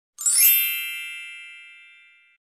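A logo chime sound effect: a single bright ding struck just after the start, its shimmering top dying away first and the lower ring fading out over about two seconds.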